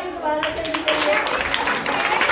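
A group of children clapping, breaking out about half a second in and continuing as a quick, uneven patter of hand claps, just as a voice ends.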